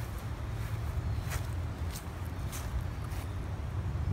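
Steady low outdoor background rumble with a few faint, light ticks.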